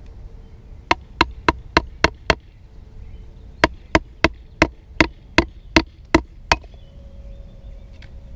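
A wooden baton striking the spine of a DW Viper bushcraft knife to split a piece of wood (batoning): six sharp knocks at about three a second, a pause of about a second, then nine more.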